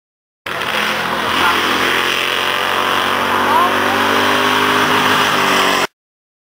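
Race car engine running steadily as the car passes along the oval track. The sound starts abruptly about half a second in and cuts off just before the end.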